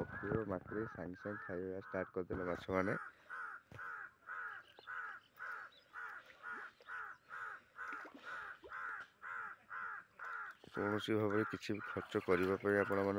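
A crow cawing over and over, about two caws a second, in a steady run.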